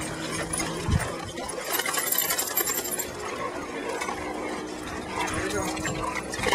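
Dogs wading in shallow lake water at a stone step, with water sloshing, scattered small clicks and a low thump about a second in.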